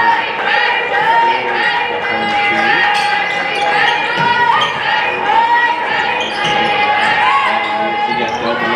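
Live game sound from an indoor basketball court: sneakers squeaking on the hardwood, a ball bouncing, and players calling out.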